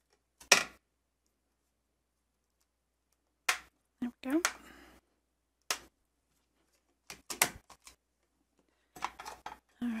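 Clear acrylic stamps and the plastic lid of a stamping platform being handled: a string of separate sharp clicks and taps as the stamps are set down and the clear lid is closed onto them and lifted away.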